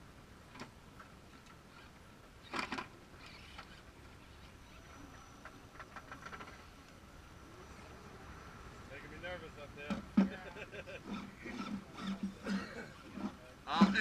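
Radio-controlled scale rock crawlers working over granite: a faint steady whine, one sharp knock about two and a half seconds in and a few lighter ticks, with indistinct voices over the last few seconds.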